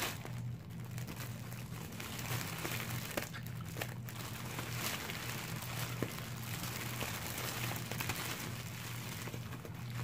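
Cellophane gift-basket bag crinkling and crackling as it is gathered at the top and squeezed to push the air out, over a steady low hum.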